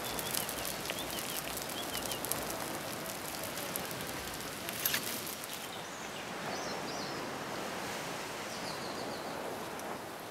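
Steady outdoor background noise with faint, short bird chirps now and then, and a single sharp click about five seconds in.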